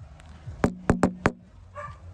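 Four sharp knocks on a front door, close together, then a brief dog yelp near the end.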